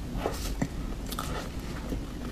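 Close-miked mouth sounds of a person eating whipped-cream sponge cake: a run of short clicks and smacks as she takes a mouthful and chews.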